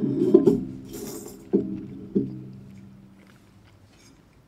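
A short musical phrase: low notes struck three times, at the start and then about one and a half and two seconds in, each ringing out and fading. A brief high jingling shimmer comes about a second in.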